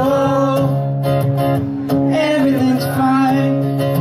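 Acoustic guitar strummed steadily, with a male voice singing over it in two short phrases, one at the start and one in the second half.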